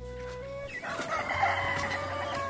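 A rooster crowing: one long, drawn-out call that starts a little under a second in.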